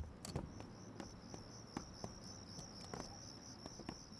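Crickets chirping in a steady, quick pulse, with a few light knocks scattered through it.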